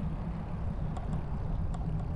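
Steady low rumble of a bicycle rolling along an asphalt bike path, tyre noise mixed with wind on the microphone, with a few faint short ticks about a second in.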